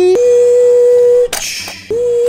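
A man's voice making toy truck sounds: a long held beep, a short hiss, then another beep starting near the end.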